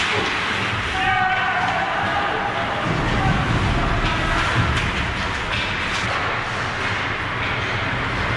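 Ice hockey play close to the net: skate blades scraping the ice, with stick and puck clacks, and a shout about a second in. A low rumble rises from about three seconds in.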